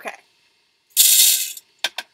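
A scoop of whole coffee beans poured into a burr grinder's hopper: a short, loud rattle about a second in, then a sharp click near the end.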